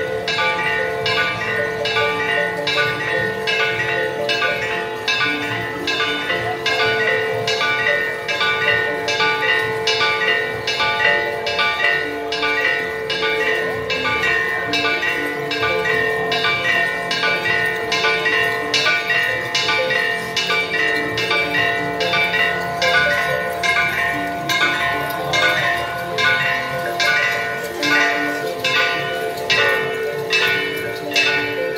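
Church bells pealing rapidly, struck about twice a second, the tones of several bells ringing on and overlapping between strokes.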